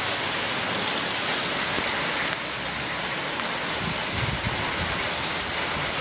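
Heavy rain falling steadily, a continuous even hiss, a little quieter from just over two seconds in.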